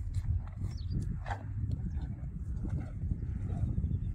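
Wind rumbling on the microphone in an open pasture, with a few short rustles and knocks close by as a cow noses at a wicker basket. There is a brief hiss about a second in.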